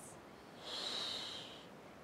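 A single hissing breath, about a second long, from a person exerting through a Pilates twisting crunch.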